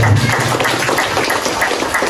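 Audience applauding: many people clapping their hands at once in a dense, steady patter.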